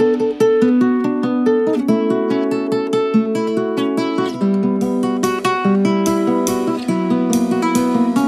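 Acoustic guitar playing an instrumental passage of quick picked single notes and chords, with no singing and almost nothing in the low end underneath.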